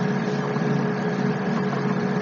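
Steady, unchanging background hum and hiss from the recording, with a constant low drone and a thin steady tone above it.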